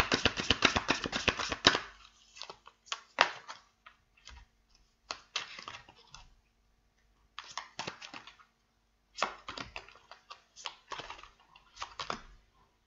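Tarot or oracle cards being shuffled and handled on a table: a fast rattle of card clicks for about the first two seconds, then scattered taps and short rustles as the decks are moved and set down.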